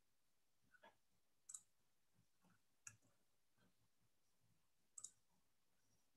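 Near silence broken by a few faint, scattered clicks of a computer mouse, two of them close together about five seconds in.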